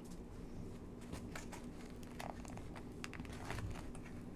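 Cardboard burger clamshell box being pried and torn at by hand: scattered faint scrapes, crinkles and small clicks, a box that is hard to get open.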